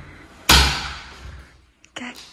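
Interior wooden door being opened by a child working the handle: a single loud bang about half a second in that fades over about a second, then a small click near the end.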